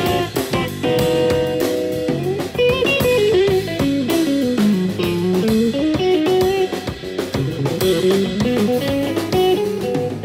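Live band playing an instrumental passage: a Telecaster-style electric guitar plays a lead line that winds down in pitch around the middle and climbs back, over electric bass and a drum kit.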